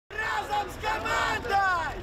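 A group of people shouting a cheer together in chorus, the voices held and then falling in pitch near the end.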